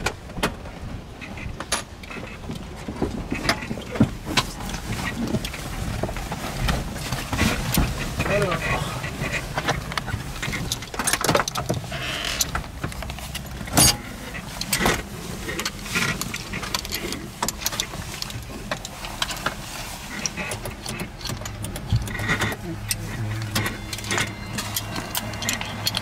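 Scattered clicks and knocks as people climb into a parked helicopter's cabin and settle in, with indistinct voices in the background. A low steady hum comes in over the last few seconds.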